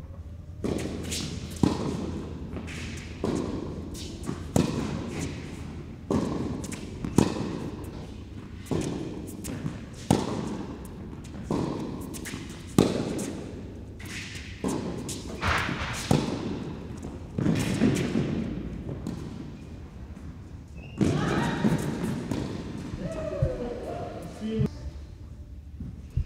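Tennis rally on an indoor hard court: racquet strikes on the ball and ball bounces, a sharp pop about every second to second and a half, echoing in the hall. A louder, noisier stretch comes near the end.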